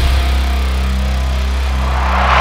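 Title-card transition sound effect: a deep, buzzy bass drone under a hissing wash, holding steady and swelling slightly near the end.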